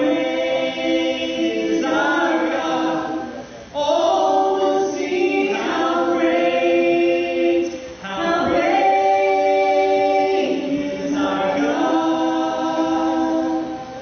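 A congregation and worship singers singing a chorus together a cappella, without instruments, in three long held phrases with brief breaths between them; the singing fades out near the end.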